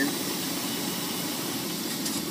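Semi truck's diesel engine running steadily, heard from inside the cab, with a steady hiss above it.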